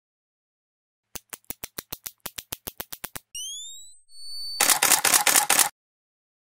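Camera sound effects. First a mode dial clicks round quickly, about seven clicks a second. Then a flash charging gives a rising whine that levels off into a steady high tone. Last and loudest is a rapid burst of shutter clicks, which stops suddenly.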